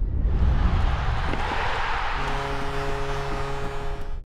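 Outro music sting for a branded end graphic: a loud swelling whoosh with a deep low end. About two seconds in it settles into a held chord.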